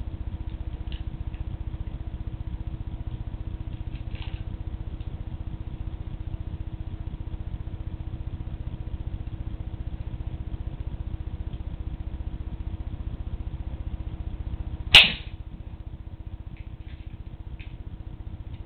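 A spring-loaded mousetrap rigged as a homemade BB claymore snaps shut once, a single sharp crack about fifteen seconds in, going off while it is being set. A steady low hum and a few faint handling clicks lie under it.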